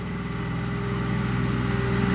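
Compact tractor engine working hard as the tractor climbs a steep, rutted dirt slope, a steady low drone that slowly grows louder.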